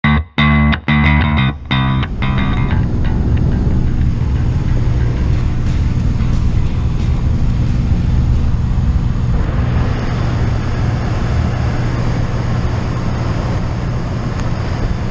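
Rock music cuts off within the first two seconds, giving way to the steady drone of a light propeller plane's engine heard inside the cabin. About nine and a half seconds in, a rush of wind noise rises over the drone as the jump door opens.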